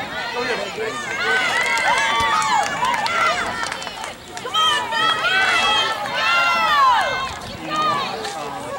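Several high-pitched voices shouting and calling out across a lacrosse field, overlapping in two bursts, the second near the end with one long falling call.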